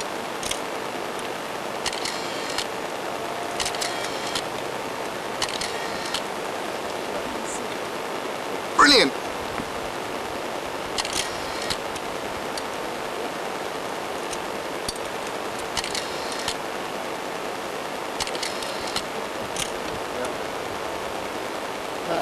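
Steady outdoor background hiss, with a few faint brief sounds and one short sweeping call about nine seconds in, the loudest moment.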